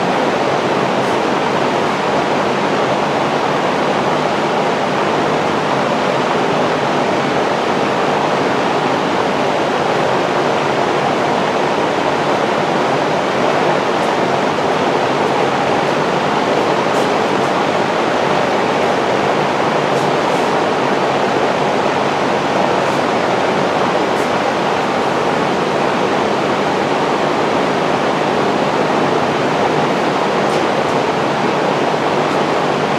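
A shop fan running: a steady, loud rushing noise, with a few faint clicks in the second half.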